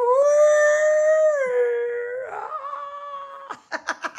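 A dog howling: one long, steady howl of about three and a half seconds that drops slightly in pitch partway through, followed near the end by laughter.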